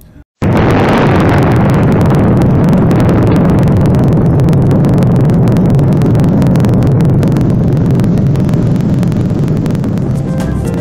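A huge mushroom-cloud explosion: a sudden blast about half a second in, rolling on as a long, very loud, deep rumble that fades only slightly.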